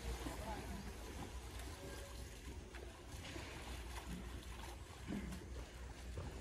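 Faint splashing and sloshing of water as two men wash a young elephant lying in shallow water, under a steady low wind rumble on the microphone, with faint voices now and then.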